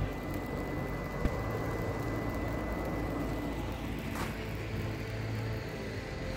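Steady outdoor rumble and hiss by an icy fjord, with a faint steady high tone and a single sharp click about a second in.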